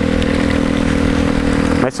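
Motorcycle engine running at a steady cruise, a constant drone under a steady hiss of wind and rain.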